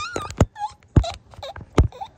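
A young woman's short, squeaky, animal-like vocal noises with a few sharp mouth or tongue clicks between them.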